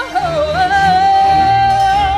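A woman's voice singing over an orchestral backing track. A short sliding phrase leads into one long note held at a steady pitch from about half a second in.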